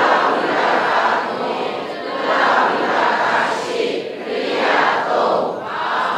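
Many voices reciting together in unison, in about four phrases that swell and fade.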